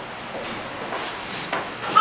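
Wooden picture frame being handled against a wall: light rubbing and knocks of wood, building to a sharper knock just before the end.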